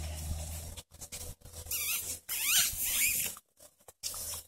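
Boxer puppies squealing in play while tugging on a plush toy: a run of short, high, rising-and-falling squeals from about a second and a half in to just past three seconds.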